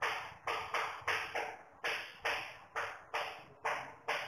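Chalk writing on a blackboard: a quick, uneven run of short taps and scratches, about three strokes a second, as letters are written.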